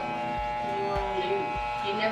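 Corded electric hair clippers buzzing steadily as they cut a child's hair, with a faint voice underneath.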